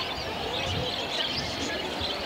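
Many caged birds chirping at once: a dense, continuous twitter of short high chirps, with a faint murmur of voices beneath it.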